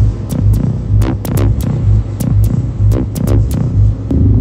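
Electronic ambient music: a synthesizer bass pulsing about twice a second, with scattered sharp clicks and short falling sweeps over it.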